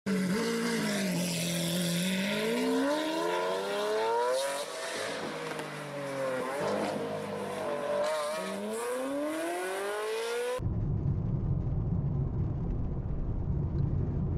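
Car engine revving sound effect, its pitch climbing and dropping several times. About ten seconds in it cuts off suddenly to the steady low rumble of a car driving on the highway, heard from inside the car.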